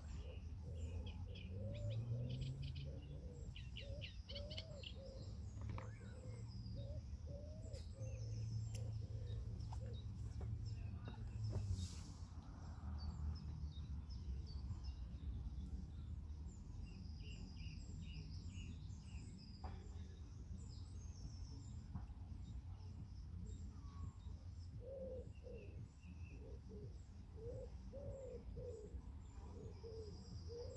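Birdsong: a pigeon cooing in repeated phrases of low notes near the start and again near the end, with small birds chirping throughout over a steady low rumble.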